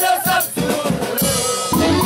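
Huaylas music from a live band of saxophones and a drum kit, with a voice over it at the start. A cymbal crash comes about a second in, and the full band, brass included, picks up near the end.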